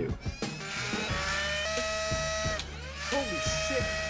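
Nerf MA40 blaster's flywheel motors spinning up with a rising whine. The whine holds a steady pitch, winds down, then spins up again near the end.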